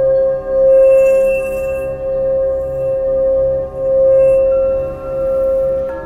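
Hand-held metal singing bowl rimmed with a mallet, giving one sustained ringing tone with shimmering overtones that swells and eases in slow waves without dying away. A higher overtone joins about two-thirds of the way through.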